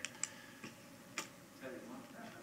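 Quiet room tone with a few scattered sharp clicks, the loudest a little over a second in, and a faint voice murmuring near the end.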